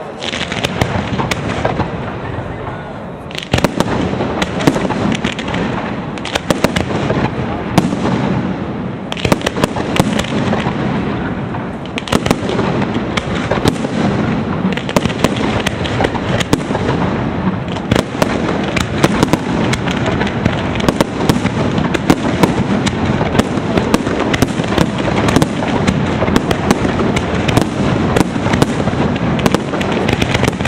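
Aerial fireworks display: a dense, continuous crackle of bursting shells punctuated by many sharp bangs, with a short lull about three seconds in and the reports coming thicker in the second half.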